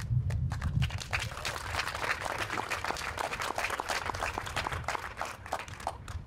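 A crowd applauding: many hands clapping in a dense patter that builds about a second in and tapers off near the end.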